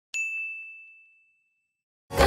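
A single bright notification-bell ding sound effect, struck once right at the start and ringing away over about a second and a half.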